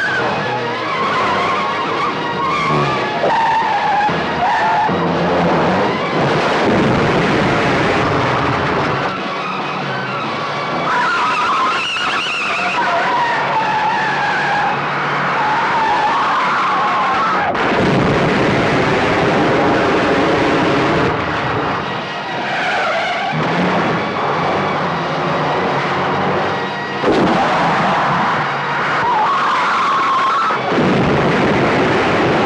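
Cars in a chase, engines revving hard with repeated tyre squeals as they skid through turns.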